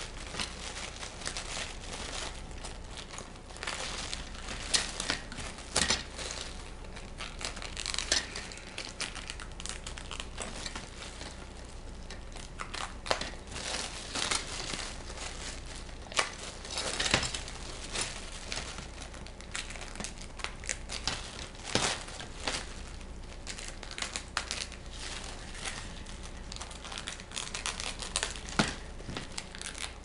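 Thin clear plastic film crinkling in irregular bursts as it is handled and trimmed away with scissors.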